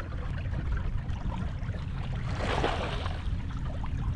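Water sloshing around a fishing kayak over a steady low rumble, with a short splash about two and a half seconds in as a small hooked halibut and its flasher are reeled up to the surface.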